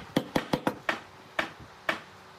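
A steel chisel cutting a small square hole into a turned wooden handle, giving about seven sharp clicks at irregular intervals as the blade bites into the wood.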